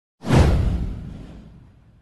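Whoosh sound effect with a deep rumble under a high hiss, starting suddenly a moment in and fading away over about a second and a half.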